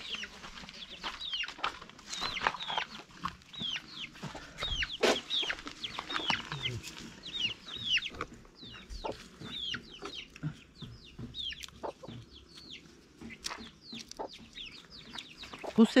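Chickens calling: a steady stream of short, high calls that slide downward, several a second, with a few faint knocks among them.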